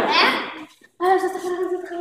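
Children's voices: a short excited burst of voice, then a long drawn-out vocal note held on one pitch by a child.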